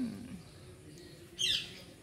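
One short, high-pitched bird chirp about one and a half seconds in, over a faint background.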